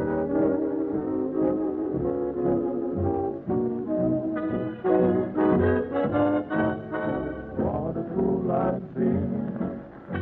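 A dance band playing a tune, with brass to the fore, in a muffled old recording that has no treble.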